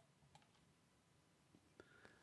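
Near silence: room tone with a couple of faint clicks, one about a third of a second in and one near the end.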